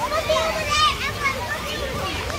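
Children's voices chattering and calling out, high-pitched, with the loudest cry just under a second in.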